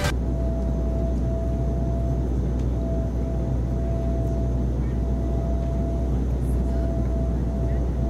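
Jet aircraft engines running in a steady drone with a steady high whine over a low rumble, heard through a television speaker.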